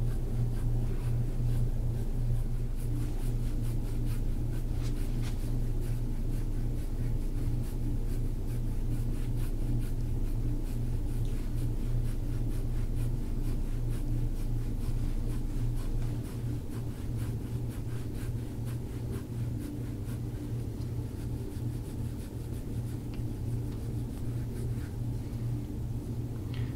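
Gua sha scraping tool drawn over and over across the skin of the back in short rasping strokes, over a steady low hum.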